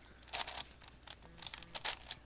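Plastic layers of a V-Cube 7x7x7 puzzle cube being turned by hand: a few short clicking, scraping turns, the loudest about half a second in and another near the end.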